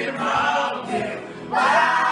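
A group of young male and female voices singing together in unison to a strummed acoustic guitar; the singing swells louder about one and a half seconds in.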